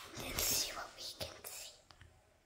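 A person whispering in short breathy bursts, with a brief click near the end.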